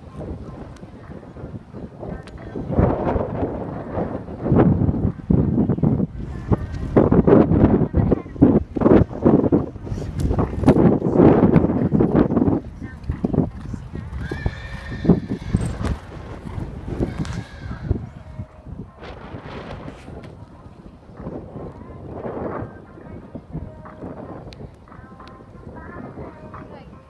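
A horse cantering a show-jumping course on a sand arena: its hoofbeats are loudest in the first half, as it comes close and jumps a fence, then fade as it moves away.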